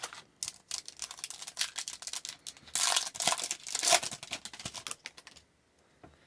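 A trading card pack is pulled from the box and torn open. The wrapper makes a quick run of crackles and clicks, loudest around the middle as it tears, and stops shortly before the end.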